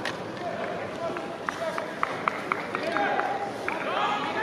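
Soccer players shouting to one another across the pitch, their voices carrying in an open, near-empty stadium. A run of about eight short, sharp taps sounds in the middle.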